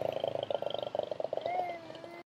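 A man's voice trailing off into a drawn-out creaky hum that fades, ending in a short hum that rises then falls in pitch near the end.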